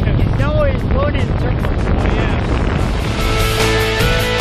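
Wind buffeting the microphone with a brief voice early on; about three seconds in, background music with a steady beat fades in over it.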